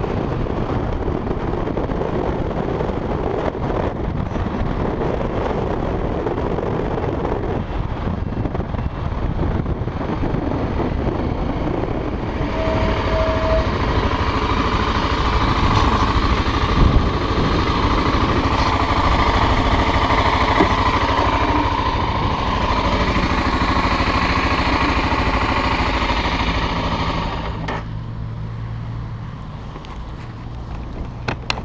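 BMW F650 motorcycle riding with engine, wind and road noise on the rider's camera. Near the end it slows and settles to a steady idle.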